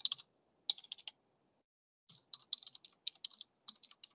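Computer keyboard typing in bursts of quick keystrokes: a short run at the start, another just under a second in, then a longer, faster run from about two seconds on.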